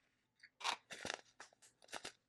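Plastic handling noise from a small clear drill container and a bag of resin diamond-painting drills: a quick run of short dry crackles and clicks, about six of them, starting about half a second in.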